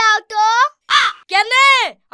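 A girl's shrill, high-pitched raised voice, shouting or wailing in several short cries, with a brief breathy burst about halfway.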